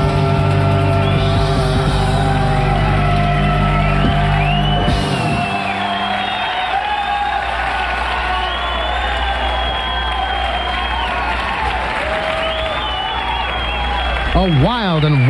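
Live rock band holding a closing chord that cuts off about five seconds in, followed by audience applause and cheering at the end of the song.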